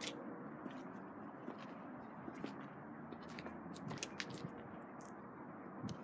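Faint scuffing and crunching footsteps on a gritty tarmac surface, irregular and light, over a steady low outdoor background hum.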